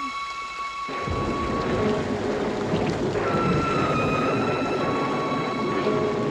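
Thunder rumbling with heavy rain, breaking in suddenly about a second in and staying loud, over a few held high tones.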